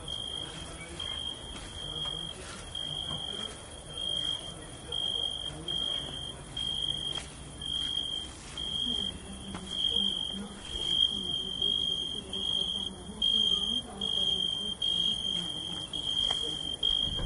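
Cricket chirping: a steady high note repeating about twice a second, over a faint low background murmur.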